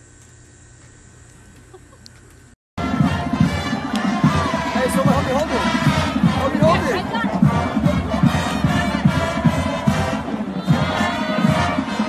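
A faint, steady background for the first couple of seconds. Then, after a sudden cut, a loud crowd of voices shouting and cheering with music running underneath.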